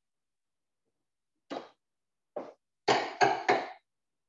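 Knocks and clatter of cookware: two lighter knocks, then three loud ones in quick succession.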